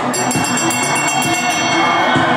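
Hand bell rung rapidly for about a second and a half over crowd noise and music: the last-lap bell of a short-track speed skating race.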